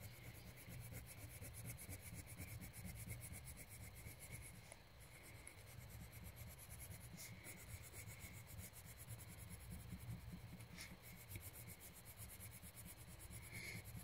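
Faint, steady rubbing of a colouring tool on paper as part of a drawing is coloured in.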